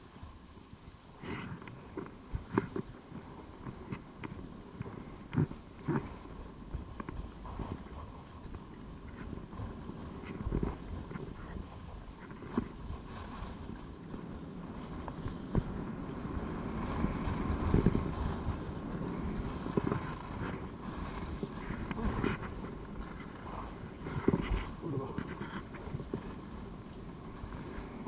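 Skis scraping and hissing over groomed snow on a downhill run, with wind on the microphone and irregular sharp knocks; the noise swells for a few seconds in the second half.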